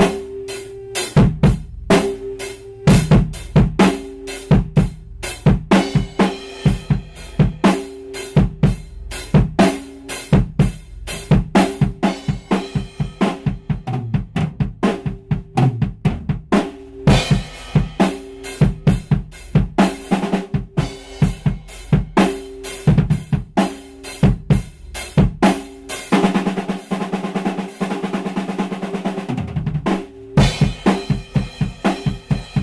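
Drum kit being played: a muffled bass drum giving a short, tight but low kick under snare hits and cymbals. The kick's padding has been pushed up against the head. Near the end a fast roll runs for about three seconds without the kick.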